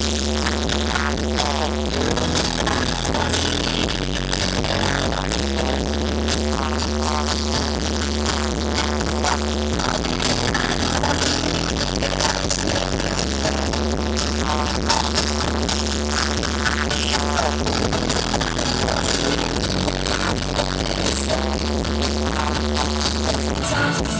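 Live band playing a synth-pop song, with keyboards and electric guitar over a steady beat. Underneath, a bass line holds long notes that change every few seconds.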